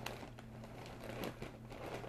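Light handling noises: faint rustling and a few soft clicks over a steady low hum.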